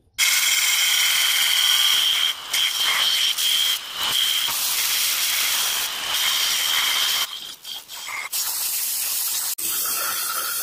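Belt grinder grinding a steel sword blank: a steady hissing rasp with a high whine. It is broken by a few brief drops, the longest lasting about a second, some seven seconds in.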